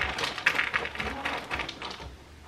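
A quick, irregular run of small clicks and taps, fading slightly over the two seconds.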